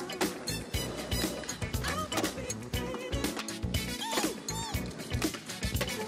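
Music soundtrack with a steady drum beat.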